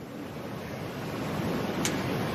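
Wind rushing across an outdoor microphone, a steady noise that grows gradually louder, with a single brief click near the end.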